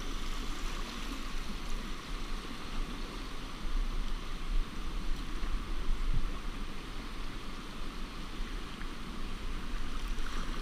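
River rapids rushing around a moving canoe: a steady rush of whitewater with a deep rumble underneath.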